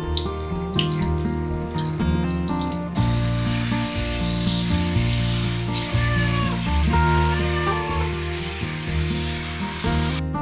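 Hand-held shower head spraying water over a wet Ragdoll cat, the spray starting suddenly about three seconds in, over steady background music. The cat meows a few times near the middle.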